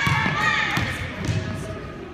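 Children's voices in a gym, with basketballs bouncing and thudding on the hardwood floor.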